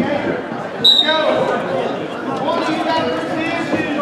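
A short, sharp referee's whistle blast about a second in, starting the wrestling, over several voices of coaches and spectators calling out.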